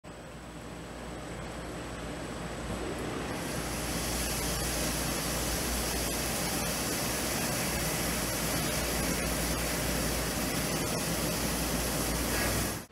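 CNC milling machine cutting a metal plate under flood coolant: a steady, water-like hiss of the coolant spray with the spindle and cut running beneath it. It fades in over the first few seconds and gets brighter with more hiss about three and a half seconds in.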